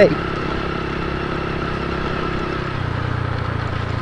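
A small motorcycle's engine running steadily under way on a dirt road, with wind and road noise; about three-quarters of the way through its note drops lower.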